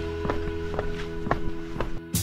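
Background music: a held chord under short plucked notes that repeat about four times a second.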